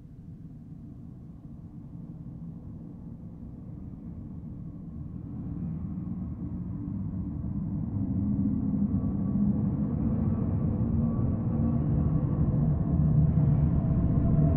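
A low rumbling drone that swells steadily louder, with faint held higher tones coming in during the second half.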